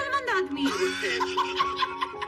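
A man laughing, a snickering chuckle, over background music with held notes.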